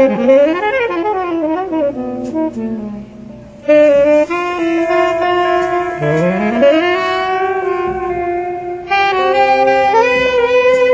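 Jazz saxophones with electric guitar playing a slow ballad theme. After a moving opening phrase, long held notes sound together in harmony from a little under four seconds in, and a fresh chord swells in near the end.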